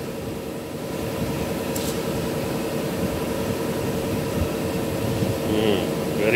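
A steady mechanical hum with a constant mid-pitched tone running through it. A voice comes in briefly near the end.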